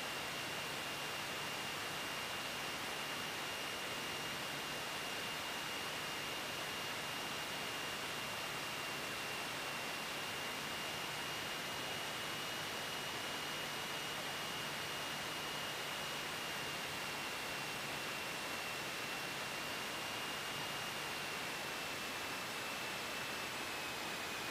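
Steady hiss with a faint, steady high-pitched whine that dips slightly near the end: the noise floor of the cockpit intercom/radio audio feed while the headsets are quiet. Neither the engine nor the touchdown stands out.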